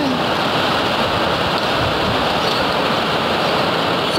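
Heavy rain and strong wind of an arriving typhoon: a steady, even rush of noise.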